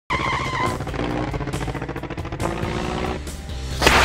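Intro music with sound effects, ending in a loud whoosh just before the end.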